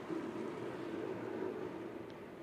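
Faint whirring drone of a four-rider team pursuit line of track bicycles going by, swelling just after the start and easing off toward the end.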